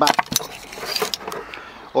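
Light clicks and clinks of a bundle of nickel-cadmium drill battery cells being handled, their spot-welded metal connecting strips rattling together. There are several quick clicks in the first half second, then a few scattered ones.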